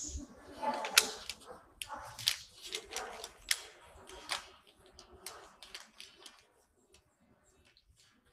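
A paper bag being picked up and handled, crinkling and rustling in a string of sharp crackles that die away about six and a half seconds in.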